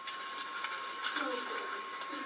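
Faint, indistinct voices in a small room, over a steady high-pitched tone.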